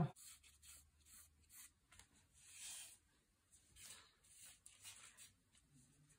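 Faint scratching strokes of a marking tool drawing a straight line down cotton fabric, several short strokes with a longer one about two and a half seconds in.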